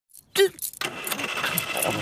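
A brief pitched squeak just before half a second in, then a car engine starting and running steadily, a cartoon sound effect.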